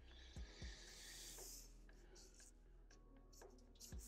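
Faint scratch of a black felt-tip marker drawing on paper, one stroke of about a second starting about half a second in, with a few soft low thumps.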